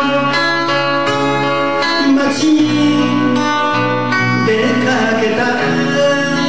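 A live acoustic band playing a song, with acoustic guitars, banjo and electric bass under sung vocals.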